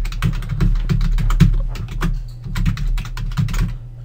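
Typing on a computer keyboard: a quick, uneven run of keystrokes that stops shortly before the end.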